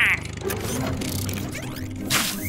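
Cartoon mechanical sound effect: a ratcheting, gear-like whirr of the octopus car setting off on its tank treads. It comes in after the tail end of a cackling laugh at the very start, with a falling sweep and a click about half a second in.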